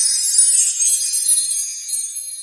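High, tinkling, bell-like sparkle jingle from an animated logo intro, with many high tones shimmering together and slowly thinning out near the end.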